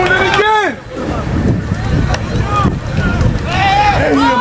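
Voices calling out at a football game, loudest in one shout about half a second in, with faint voices after it and more calls near the end. Underneath runs a steady low rumble of wind on the microphone.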